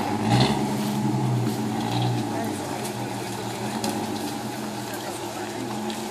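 Jeep Cherokee XJ's engine running at low revs as it crawls along a rough trail, rising briefly about half a second in, then settling to a steady hum.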